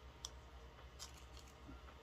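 Near silence over a low steady hum, with a couple of faint clicks about a quarter of a second and a second in: plastic lipstick packaging being handled and opened.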